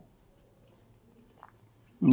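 Felt-tip marker writing on a whiteboard: faint, short scratchy strokes as letters are written.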